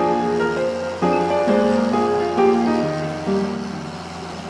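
Background music: a slow melody of held instrument notes that changes pitch every half second or so and fades a little near the end.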